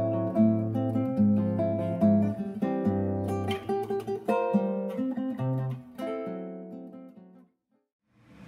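Acoustic guitar background music, picked notes over low bass notes, fading out near the end.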